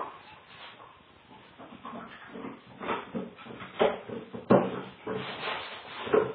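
Small dogs moving about and playing, with irregular knocks, bumps and scuffles against the floor and furniture, the sharpest knock about four and a half seconds in. The sound is thin, as heard through a home security camera's microphone.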